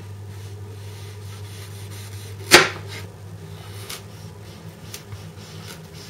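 Kitchen knife slicing a peeled carrot into thin rounds on a plastic cutting board: soft cuts, with one sharp knock of the blade on the board about two and a half seconds in that stands out above the rest.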